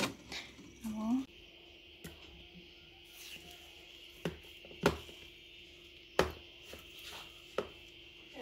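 A metal spoon scooping frozen ice cream from a plastic tub and knocking against a glass dessert bowl: a handful of sharp clicks spaced a second or so apart.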